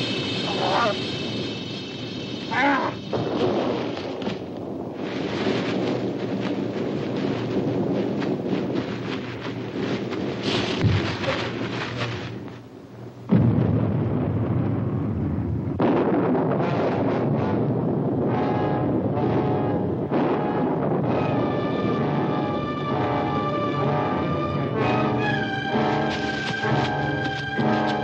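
Horror film soundtrack: a woman's short screams in the first few seconds over dense, tense music and struggle noise, then a sudden loud crash a little past halfway, followed by orchestral music with held brass chords.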